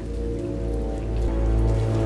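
Background music with held chords and a deep sustained bass that comes in about half a second in.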